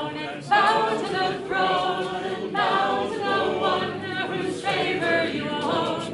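Unaccompanied voices singing a song together, a cappella, in sung phrases of a steady pulse.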